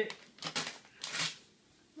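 Gift wrapping paper being ripped: two short rips in quick succession.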